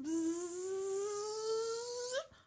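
A woman imitating a honeybee with her voice: one long buzzing 'bzzz' that rises slowly in pitch, lifting a little at the very end.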